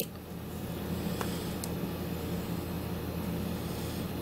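Steady whooshing fan noise of a wall-mounted air-conditioning unit running, with two faint clicks a little over a second in.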